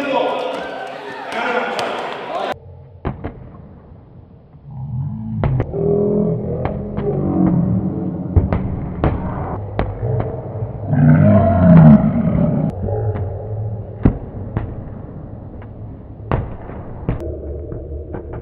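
Rubber dodgeballs being thrown and striking in a gym, a run of about fifteen sharp slaps spaced irregularly half a second to a second apart. A murmur of voices sits under the strikes through the middle. A different, noisier gym din fills the first couple of seconds before a cut.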